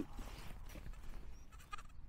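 Quiet field background with a faint, distant sheep bleat near the end.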